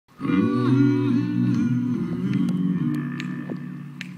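Low men's voices hold a long sung 'yeah' that fades away over about three and a half seconds. A few faint clicks come near the end.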